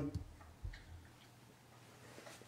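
Faint room sound with a few light ticks and a short, soft low thump a little over half a second in.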